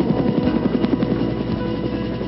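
Helicopter rotor blades chopping in a fast, even rhythm over background music.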